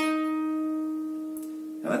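A single note plucked on a steel-string acoustic guitar at the 8th fret of the G string (E-flat), ringing out and slowly fading. It is the last note of the melody's opening phrase.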